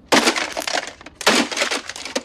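Something being smashed: two loud crashes about a second apart, each with a breaking, crunching tail, then a quick run of rattling clatter.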